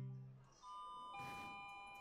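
Soft electronic chime of several notes, entering one after another from about half a second in and ringing on, like an airport public-address chime. At the very start the last notes of guitar music fade out.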